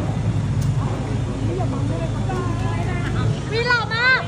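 A parked passenger van's engine idling with a steady low hum under the chatter of a crowd. Near the end a high-pitched voice calls out.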